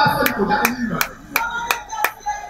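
Hands clapping in a steady rhythm, five sharp claps about three a second, over a low voice.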